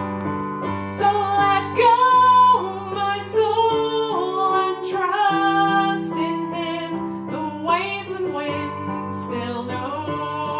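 A woman singing a slow worship song, accompanying herself on a digital piano with sustained chords under the melody.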